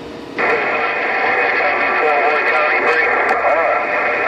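A distant station's voice coming in over a President HR2510 11-meter radio's speaker, faint and heavily buried in static within the set's narrow audio band, starting about half a second in: a weak long-distance skip signal on 27.085 MHz.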